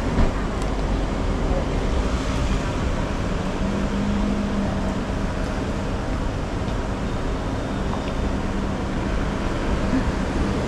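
Steady outdoor street noise: a continuous traffic rumble with a steady low hum, and one brief knock just after the start.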